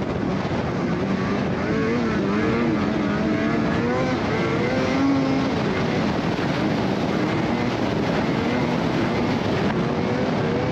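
Polaris Matryx XCR 850 snowmobile's two-stroke engine running under way, its pitch rising and falling with the throttle through the first half, over steady track noise.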